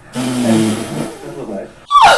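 Laughter from a voice and a room of people, starting just after the beginning and fading out by about a second and a half in.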